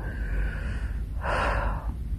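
A man's audible breath in a pause between phrases: a soft, noisy intake of breath lasting under a second, a little past the middle.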